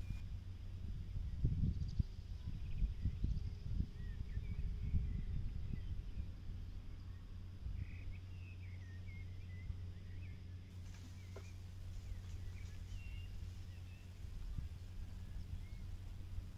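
Outdoor ambience: wind rumbling on the microphone, gustier in the first few seconds, with faint bird chirps scattered through.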